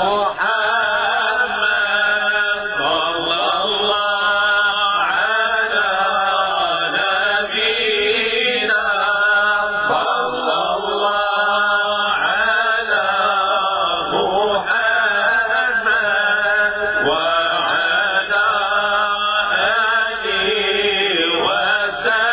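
Men's voices singing an Islamic madih, a chant in praise of the Prophet, without instruments, in long, ornamented melodic phrases with brief breaths between them.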